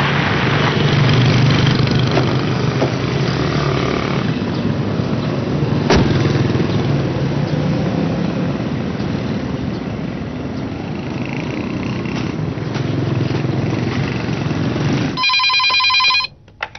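Street traffic: motorbikes and cars running past, a steady engine drone under road noise. Near the end it gives way to a desk telephone ringing.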